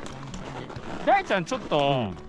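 Men's voices talking in short phrases, with soft crunching footsteps on snow in the quieter gaps.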